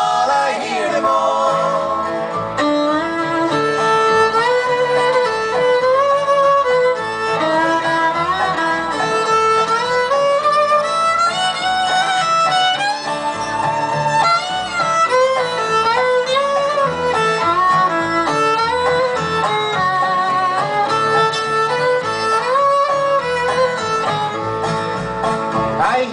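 Acoustic country-folk band playing an instrumental break: a bowed fiddle carries a gliding melody over strummed acoustic guitar, dobro and upright bass.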